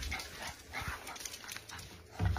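A puppy whimpering faintly, a couple of brief soft sounds.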